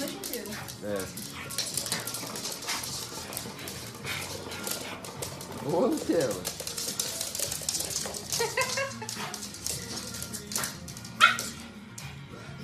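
A pug and a bulldog playing, with repeated short growls and barks over scuffling and clicking, and a louder drawn-out call that rises and falls about halfway through.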